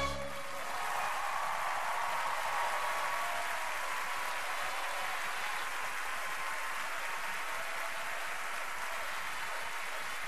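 Large theatre audience applauding, dense steady clapping with some cheering early on, right after a sung number cuts off.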